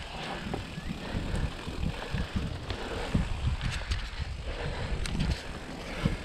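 YT Jeffsy full-suspension mountain bike ridden along a dirt singletrack: tyres on the dirt and the bike rattling over bumps, with an uneven low rumble throughout and a few sharp clicks in the second half.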